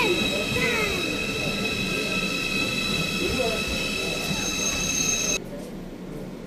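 ICE high-speed train moving along the platform, its running noise carrying a steady high-pitched whine. The sound cuts off suddenly near the end.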